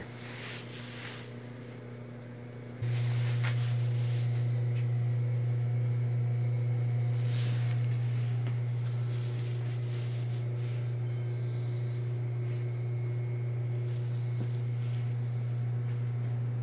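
A steady low hum, which jumps louder about three seconds in and then holds, with a few faint knocks.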